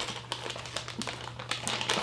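Zip-top plastic storage bag being pressed shut by hand along its zipper seal: a quick run of small clicks and plastic crinkles as the closure is worked closed.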